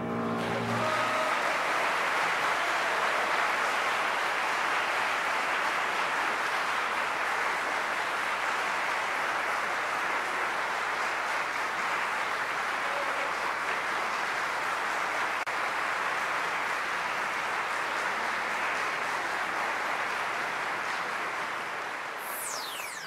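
A concert audience applauding steadily at the end of a song for soprano and piano, the last sung note and piano dying away in the first second. The clapping thins out near the end.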